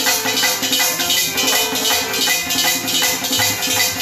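Harmonium and tabla playing devotional bhajan music: steady held harmonium notes over drumming, with a quick, even beat of high, jingling percussion.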